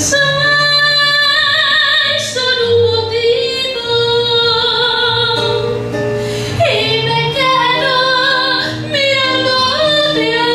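A woman singing long, held notes with vibrato, accompanied by a strummed and plucked acoustic guitar.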